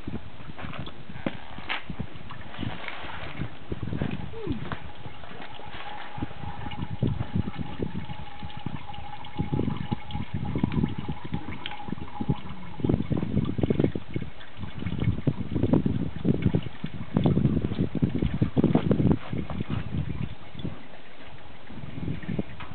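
Drained engine oil dribbling from the open drain hole into a plastic bucket. From about the middle on, irregular low rumbles come and go, louder than the trickle.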